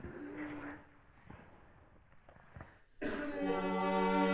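A brief faint held note, then a pause, then about three seconds in a vocal quartet starts singing a cappella, holding a full sustained chord. It is improvised Renaissance counterpoint: the lowest voice starts a fifth below the tune, alternating thirds and fifths beneath it, and the top voice answers with fourths or thirds above.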